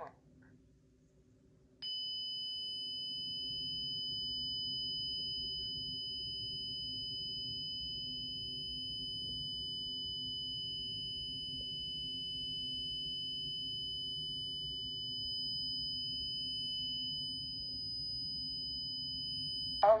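Honeywell Lyric security panel sounding a steady, high-pitched alarm siren tone for a front-door zone alarm. The tone starts about two seconds in and stops just before the next voice announcement.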